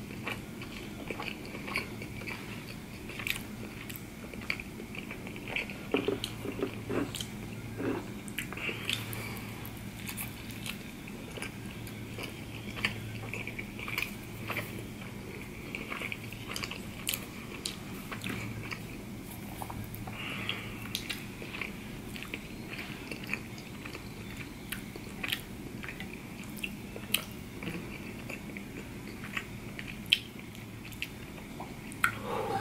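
Close-miked chewing of sushi rolls: many short, wet mouth clicks and smacks scattered throughout, over a faint steady hum.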